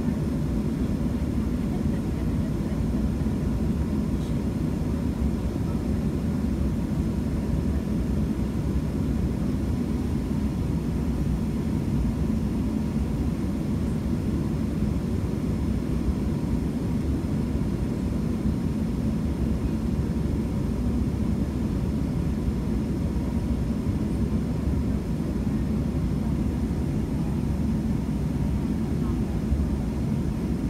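Steady low hum inside the cabin of a Boeing 737-700 standing at the gate, with no change in pitch or level.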